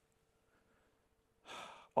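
A man drawing a short breath in, about half a second long, near the end, just before he speaks again. Before it there is near silence with a faint steady hum.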